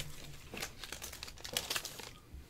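Wax-paper wrapper of a 1984 Fleer baseball card pack crinkling as it is peeled open by hand, a run of small irregular crackles.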